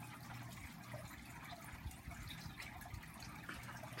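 Faint steady background hiss with a low hum, the room tone of the recording.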